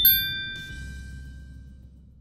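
A single bell-like ding sound effect, struck once and ringing out over about a second and a half. It marks the click on the notification bell in a subscribe animation.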